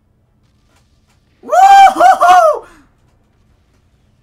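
A very high-pitched voice lets out a loud shriek of three quick cries, starting about one and a half seconds in and lasting about a second.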